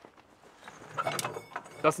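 Steel chain links and clearing elements of a Keiler mine-clearing tank's flail clinking as they are handled, with a few sharp metallic clicks about a second in. A man starts speaking near the end.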